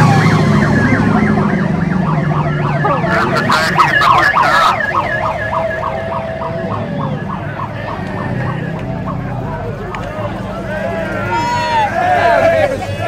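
Police-style electronic siren on a yellow MFP pursuit car, wavering up and down, then switching to a fast yelp of several pulses a second, over a car engine running.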